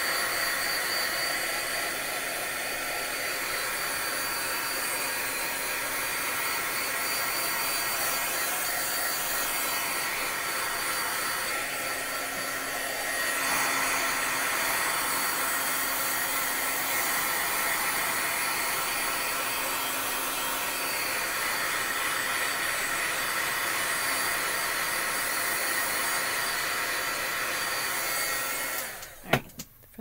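Craft heat tool blowing steadily, drying wet alcohol ink on paper panels; it cuts off suddenly near the end.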